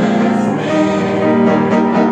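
A congregation singing a hymn together with piano accompaniment.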